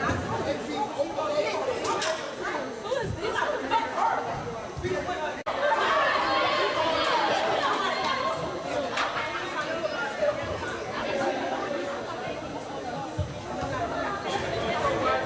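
Overlapping chatter of many voices echoing in a gymnasium, with no single clear speaker. After a brief dropout about five seconds in, the voices get louder.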